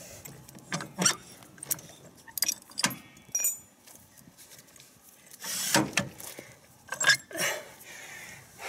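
Metal clicks, clanks and clinks from the steel arms and pins of a ReadyBrute tow bar being handled: pins pulled, lever turned and arm slid out to full length. A short metallic ring sounds a little over three seconds in, and a longer sliding rasp comes a little before six seconds.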